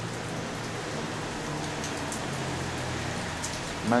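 A steady hissing noise, even across high and low pitches, with a faint low hum beneath it.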